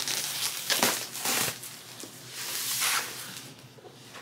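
Large cardboard shipping box being handled and slid about, cardboard scraping and packaging rustling in two spells with a few sharp knocks, dying down near the end.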